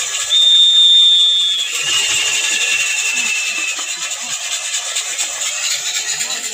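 A shrill whistle held steady for about a second and a half, then dropping to a lower, slightly falling note for about two seconds, over a constant hiss of crowd noise.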